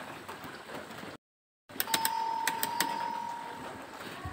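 Electronic doorbell sounding one steady tone for about two seconds, with scattered clicks around it. It comes just after a brief dropout to silence about a second in.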